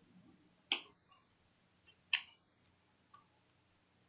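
Two sharp keyboard keystrokes about a second and a half apart, with a fainter key tap near the end.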